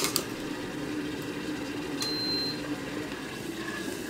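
Electric tea kettle with its water at the boil, a steady bubbling hiss. A sharp click comes right at the start, and a short high beep about two seconds in.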